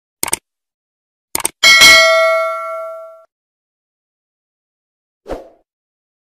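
Subscribe-button animation sound effects: a couple of quick mouse-style clicks, two more about a second later, then a bright bell ding that rings out for over a second. A single soft knock comes near the end.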